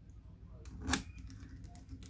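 Small metallic clicks of a precision screwdriver working the screws of a laptop's copper CPU heatsink, with one sharp, louder click about a second in.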